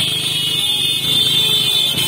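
Several motorcycles running at low speed, with a steady shrill high-pitched tone sounding over the engines.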